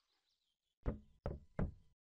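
Three quick knocks about a third of a second apart, starting about a second in: a knocking sound effect.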